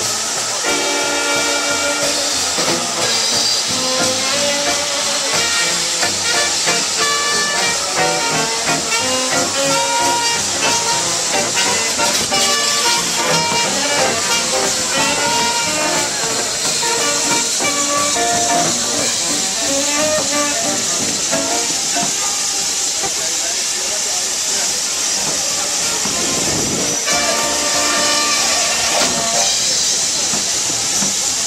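Music made of short notes plays for about the first twenty seconds. After that comes a steady hiss of steam from a standing steam locomotive, with a low swell a few seconds before the end.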